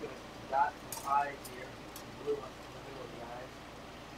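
Steady hiss of a Carlisle CC glassworking torch burning, with three light clinks from glass rods being handled about a second in, over quiet, indistinct voices.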